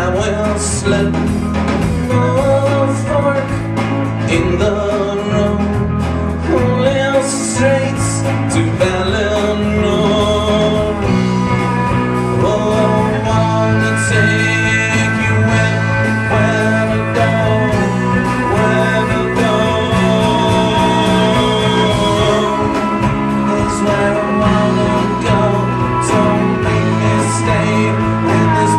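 A live country-rock band playing an instrumental passage, with a fiddle carrying the melody over acoustic guitar, electric guitar, bass and drums, steady and loud throughout.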